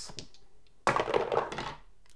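Two six-sided dice, a red and a green, rattled briefly in the hand and then thrown into a dice tray. They land with a sudden clatter about a second in and tumble to a stop within a second.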